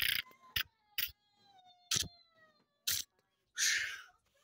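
Handling noise from a hand-held camera and plush puppets being knocked about: a few sharp knocks about a second apart and short rustling bursts, with a faint tone gliding slowly down in pitch through the first half.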